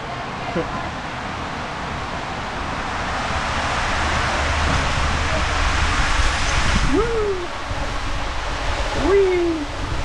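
Water rushing and a rider on a mat sliding down an enclosed waterslide tube: a steady rushing noise that builds louder through the middle of the ride. Two short cries from the rider come near the end.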